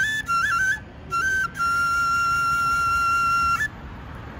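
A small flute played solo: a few quick notes stepping up and down with a brief break in the first second and a half, then one long held note that stops shortly before the end.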